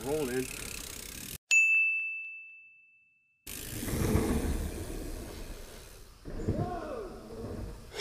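A single high, clear ding about a second and a half in, a bell-like tone that starts sharply and fades away over about two seconds while all other sound drops out. Before and after it there is low outdoor rumble.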